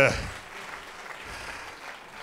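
Audience applauding: an even patter of clapping, with the end of a man's spoken word at the very start.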